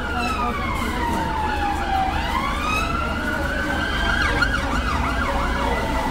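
Emergency vehicle siren wailing in slow falls and rises of pitch, with quicker, shorter sweeps over it, above a rumble of city traffic.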